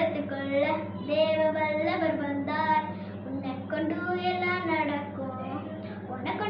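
A young girl singing a children's action song solo and unaccompanied, holding and gliding between notes, with a steady low hum underneath.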